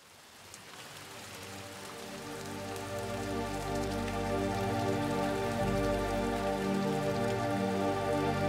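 Ambient music fading in from silence: sustained, layered pad chords under a steady patter of rain sound, growing louder through the first few seconds, then holding.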